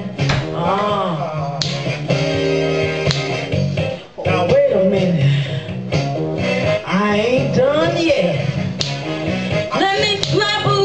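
Blues backing track with guitar, and a woman's voice singing into a handheld microphone in long sliding notes; the music drops out briefly about four seconds in.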